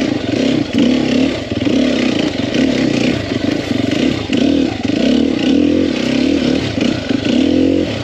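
2021 Sherco 300 SEF Factory's 300 cc four-stroke single-cylinder dirt-bike engine under repeated on-off throttle at trail speed, its pitch rising and falling again and again.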